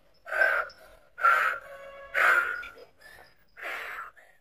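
A man's loud, breathy vocal cries: four short outbursts about a second apart.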